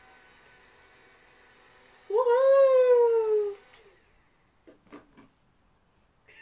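A baby's drawn-out, high vocal squeal, about a second and a half long, rising and then slowly falling in pitch. Under it runs the faint steady whine of a handheld battery bubble machine's motor, which stops about four seconds in; a few faint clicks follow.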